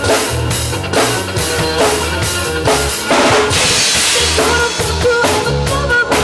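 Drum kit played in a steady beat, with bass drum, snare and rimshot hits over recorded backing music. A cymbal rings out for about a second, starting about three seconds in.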